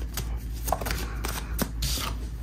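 A deck of tarot cards being shuffled by hand: irregular light snaps and rustles as the cards slide and riffle against each other, with a longer rustle near the end.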